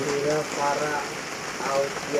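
Quiet, brief bits of speech over a steady hiss.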